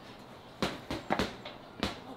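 Four dull thuds at uneven spacing: bare fists striking a heavy punching bag.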